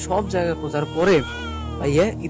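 A man talking over a steady background music bed, with one long falling, wailing cry a little past halfway through.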